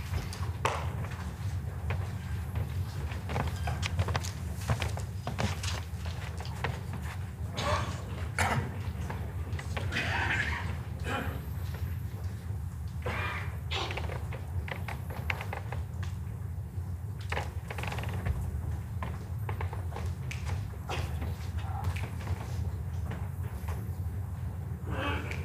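Indoor hall ambience: a steady low hum, with scattered small knocks and brief faint murmurs and shuffles from spectators.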